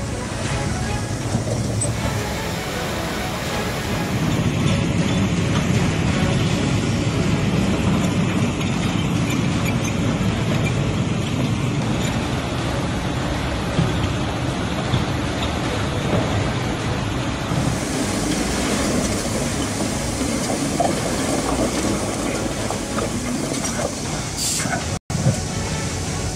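Steady din of heavy earth-moving machinery engines and floodwater rushing through a levee breach as rock is pushed into the gap. The sound shifts in character about four seconds in and again near seventeen seconds.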